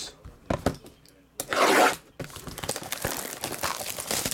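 Cellophane shrink wrap being torn off a sealed trading-card box: a few light knocks as the box is handled, one loud rip about a second and a half in, then continued crinkling of the wrapper.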